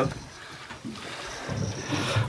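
Quiet wind and sea noise aboard a small boat, with wind brushing the microphone.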